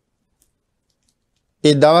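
Near silence in a pause of a monk's sermon, broken by one faint click about half a second in; a man's voice starts speaking again near the end.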